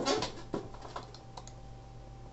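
A few light, sharp clicks from a computer mouse and keyboard, after a short low sound at the start, over a faint steady electrical hum.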